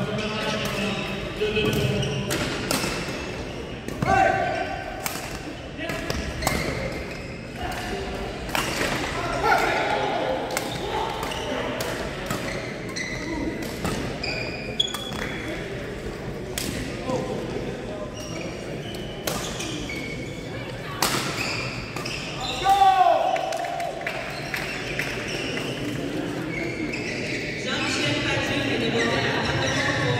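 Badminton rallies in a large, echoing sports hall: irregular sharp racket strikes on the shuttlecock, squeaking shoes on the court floor, and players' voices across the hall.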